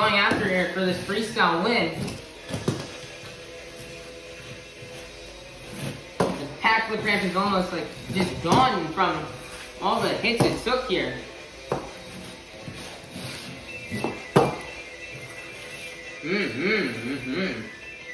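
A voice imitating monster-truck engines by mouth, humming and revving in bursts of a second or two, with a quieter stretch early on. A single sharp knock about fourteen seconds in.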